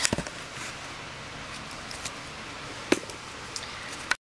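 Handling noise as a camera is picked up and set down in a new position: a few sharp knocks at the start and a single click about three seconds in, over quiet room tone.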